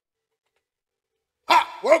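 Dead silence for about a second and a half, then a sudden loud shout from a man, running straight into the spoken greeting 'Welcome'.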